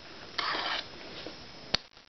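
Small plastic Lego model being handled on a wooden tabletop: a brief scrape about half a second in, then one sharp click near the end as the piece is set down.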